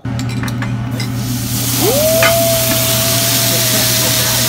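Food sizzling loudly on a teppanyaki griddle, the hiss swelling about a second in, over a steady low hum. About two seconds in, a clear whistle-like tone slides up and then holds at one pitch.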